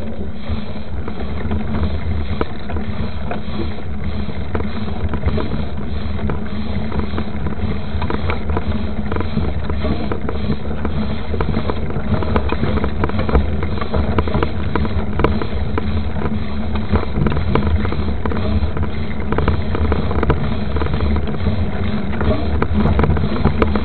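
Mountain bike rolling over a rough dirt road, heard through a camera mounted on the bike: a steady low rumble with constant rattling and small knocks as the knobby tyres run over ruts and stones.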